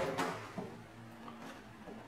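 A knock dying away at the start, then a few faint small knocks and handling noises from things being moved around in a kitchen sink, over quiet room tone.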